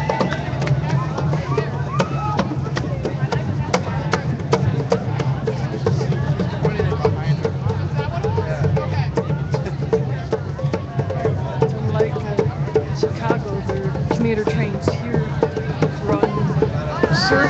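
A marching crowd talking, with frequent percussion and drum strikes running through it.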